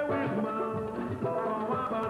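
A 1986 jingle in samba rhythm playing, a voice singing over percussion and other instruments.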